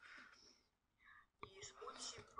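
Near silence in a pause between spoken phrases, with faint whispery speech sounds. A voice quietly resumes about halfway through.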